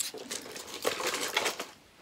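Small items being handled: a rustle of plastic packaging with a few light clicks and knocks, the sharpest a little under a second in and again just under a second and a half in, then it quietens.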